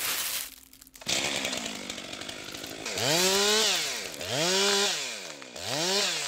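A chainsaw revved three times, the engine pitch rising and falling with each rev, after a few seconds of rough noisy running.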